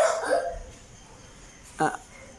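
Short bursts of a child's voice: a loud vocal sound at the start and a brief, sharp vocal sound near the end, with quiet between.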